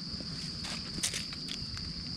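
An insect's steady high-pitched drone, with dry leaf litter crackling and rustling a few times as hands move over it, loudest about a second in.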